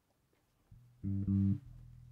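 Upright double bass plucked: a soft low note, then two loud low notes in quick succession about a second in, then a lower note left ringing.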